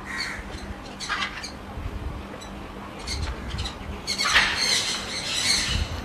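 Macaws squawking harshly: a few short calls in the first half, then a louder, longer run of squawks near the end.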